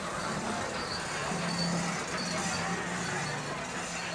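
Roller coaster train running along its track, a steady rumble and hiss with a low hum through the middle.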